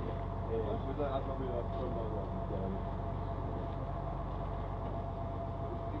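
Steady drone of a fishing boat's engine running underway, with faint voices in the background during the first couple of seconds.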